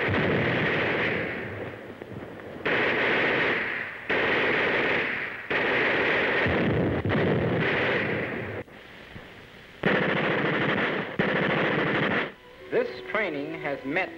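Machine-gun fire in about six bursts of one to three seconds each, separated by short pauses, on a 1940s film soundtrack. Music comes in near the end.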